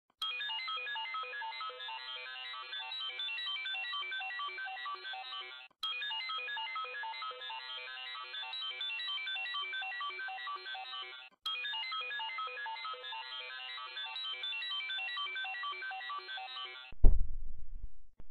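Electronic startup jingle for a made-up computer operating system: a quick melody of bright, ringtone-like notes, played three times over, each pass about six seconds long. About a second before the end it breaks off and a louder, deep sound begins.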